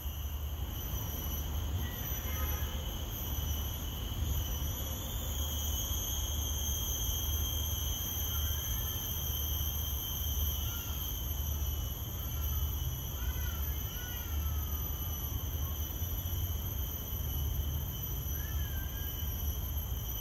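A steady high-pitched insect chorus, of the kind crickets or cicadas make, with a few short bird chirps in the middle and near the end, over a low steady rumble.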